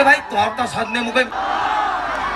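A man's voice speaking into a microphone, amplified over a stage loudspeaker system.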